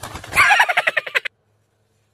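A fast run of chicken-like clucking calls that starts about a third of a second in and cuts off abruptly just over a second in.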